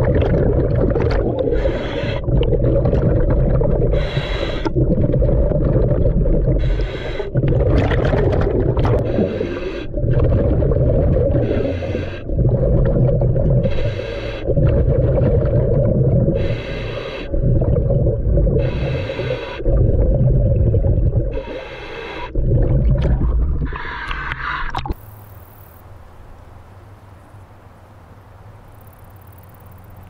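Scuba diver breathing through a regulator, heard underwater: a hiss of each inhalation every one to three seconds and the low rumble of exhaled bubbles between them. About 25 seconds in it cuts to faint outdoor ambience.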